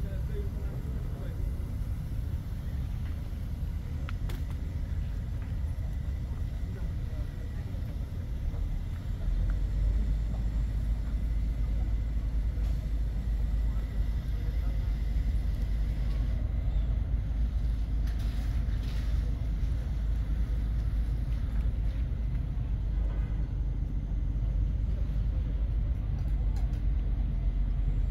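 Low rumble of wind buffeting the microphone, heavier from about nine seconds in.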